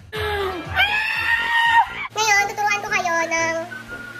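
A woman's high voice singing or shrieking long drawn-out notes. One note is held for nearly two seconds, then after a short break comes a run of shorter stepped notes.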